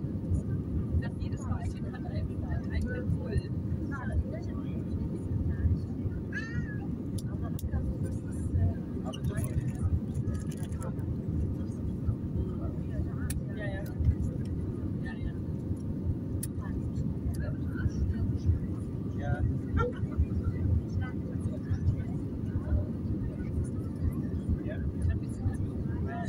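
Steady low engine and airflow noise inside an airliner cabin on final approach. Scattered short voices and high-pitched vocal sounds come through over it.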